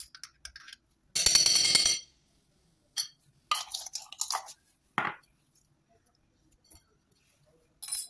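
A metal spoon scraping and clinking against a small glass jar of mustard. There is a rapid rattling scrape about a second in, then a few shorter clinks and scrapes.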